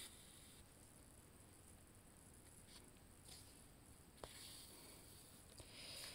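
Near silence with faint soft swishes of embroidery floss being drawn through cross-stitch fabric: a brief one at the start, a few short ones midway, a small tick about four seconds in, and a longer one near the end.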